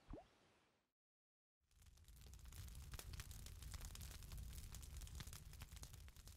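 A single water plop from a fishing bobber right at the start, then after a moment of silence a wood campfire crackling with many small pops.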